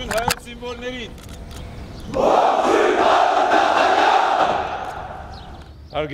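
A formation of soldiers shouting a greeting in unison, answering the president. The long loud shout starts about two seconds in, after a single man's drawn-out call, and dies away over the last seconds.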